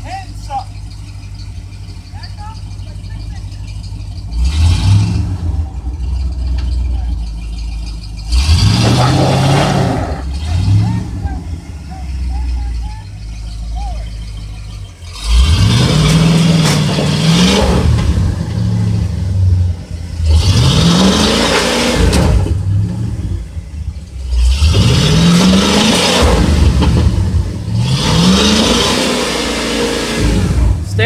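Ford F-series pickup's engine idling, then revved hard in repeated bursts every two to three seconds, its pitch rising with each burst. The truck is stuck in soft ground and being rocked to drive it out.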